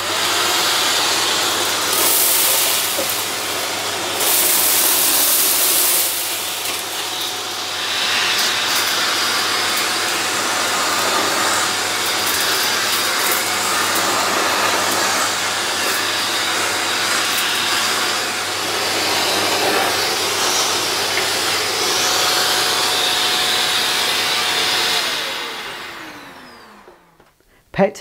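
Shark vacuum cleaner running at full suction with its under-appliance wand drawing air along the floor, the rush of air louder in two surges in the first six seconds. Near the end the motor is switched off and winds down, its whine falling in pitch until it stops.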